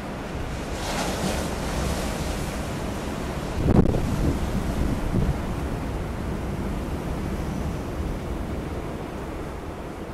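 Waves surging and washing on a storm beach, with wind buffeting the microphone. One wave swells about a second in, and a heavier, lower surge, the loudest moment, comes just under four seconds in.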